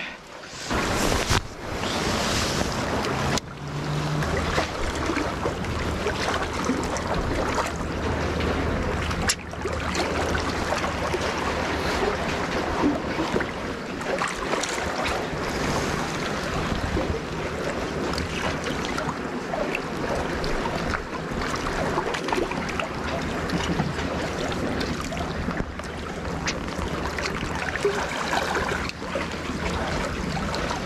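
Sea waves washing among concrete tetrapods, with wind buffeting the microphone: a steady, dense rush.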